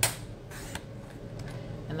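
A sharp click, then a brief faint scrape about half a second later: a paper trimmer's blade carriage on its rail, cutting through cardstock.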